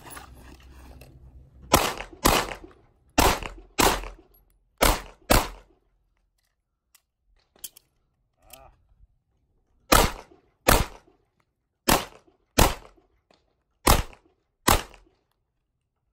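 CZ SP-01 pistol fired twelve times in pairs: six shots, a pause of about four seconds with a few faint clicks while the empty magazine is dropped and a fresh one loaded, then six more shots.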